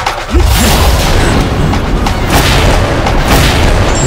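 Sound-designed fight score: a heavy cinematic boom about half a second in, then loud, dense dramatic music with effects layered over it.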